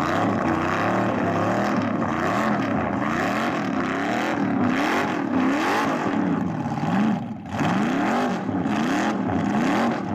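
Car engine revving hard during a burnout, rear tyres spinning and smoking on the asphalt. The revs rise and fall about once a second, with a brief lift off the throttle about seven and a half seconds in.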